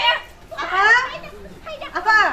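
Women yelling at each other in high-pitched voices during a hair-pulling scuffle, with one long drawn-out cry near the middle.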